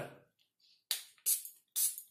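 Perfume atomizer pumped three times in quick succession about a second in, each press a short hiss of spray that fades quickly.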